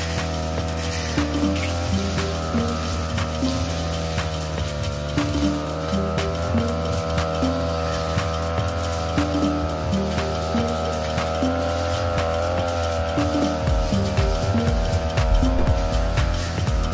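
Backpack brush cutter's small petrol engine running steadily at high revs, its pitch wavering slightly as the 45 cm steel blade swings through young grass, with background music over it.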